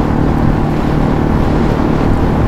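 Yamaha LC135 underbone motorcycle's single-cylinder four-stroke engine running steadily at cruising speed, about 68 km/h, during running-in, with wind rushing over the microphone.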